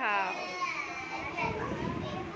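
Speech only: a voice calls out a drawn-out word at the start, then young children chatter and murmur together in the room.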